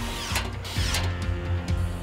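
Makita cordless power tool running briefly as it drives a fastener on the underside of a Lamborghini Urus, with background music throughout.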